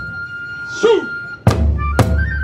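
Kagura music: a bamboo flute holds one high note, a short falling shout is heard just before the middle, and a taiko drum strike about three-quarters of the way in brings the drumming back in.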